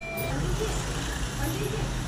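Indistinct voices over a steady low rumble of background noise.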